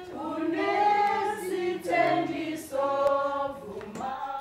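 A small group of voices, women's among them, singing together unaccompanied in slow, long-held notes, with the melody moving to a new note about every second.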